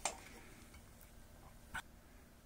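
Quiet room tone with a single sharp click near the end, a light switch being flipped off.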